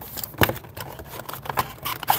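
Cardboard trading-card box and foil card packs handled on a wooden tabletop: a few light clicks and taps, the sharpest about half a second in.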